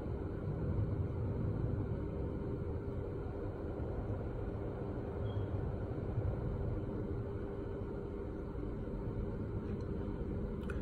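Steady low background rumble with a faint constant hum and no distinct events.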